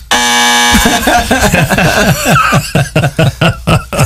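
A game-show "wrong answer" buzzer: one flat, steady buzz lasting about two-thirds of a second, marking a wrong answer. Men laugh after it.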